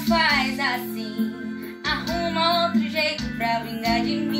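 A young female voice singing an arrocha song with guitar and a steady low backing.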